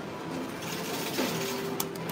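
Game-centre din: electronic arcade-machine music in short held notes over a steady mechanical clatter from a prize-pusher machine, with a few sharp clicks near the end.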